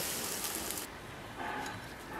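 Steam hissing from a large wok steamer of just-cooked dumplings, cutting off abruptly about a second in, followed by quieter kitchen sounds.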